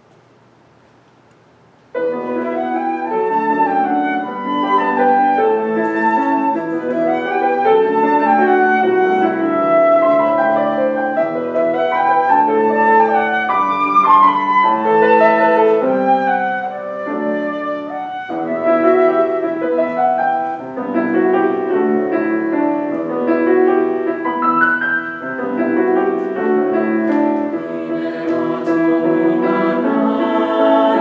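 Concert flute and grand piano playing the instrumental introduction to an arrangement of a traditional Hebrew folk song, starting suddenly about two seconds in after a quiet pause.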